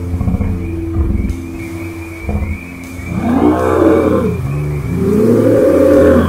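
Dark intro music with a steady low drone and held notes. About halfway through, two long howls rise and fall one after the other, and the second runs on past the end.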